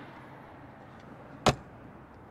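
A trailer's insulated, aluminium-framed baggage compartment door being shut, one sharp slam about one and a half seconds in.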